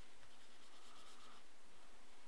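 Faint dry scratching, like a pen stroke, for about a second, over a steady hiss.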